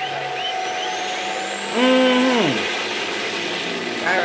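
Diesel semi-truck engines running hard in a drag race, with a faint high whistle that rises slowly. About two seconds in, a loud pitched tone holds for about half a second and then slides down in pitch.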